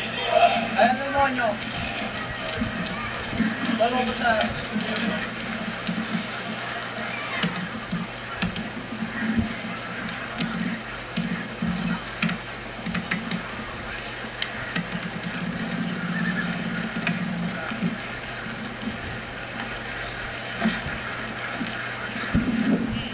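Indistinct background voices and music over a steady low hum, with no clear words.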